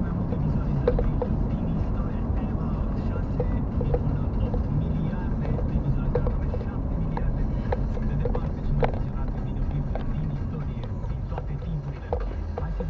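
Car driving slowly, heard from inside the cabin: a steady low engine and road rumble with scattered small clicks and rattles.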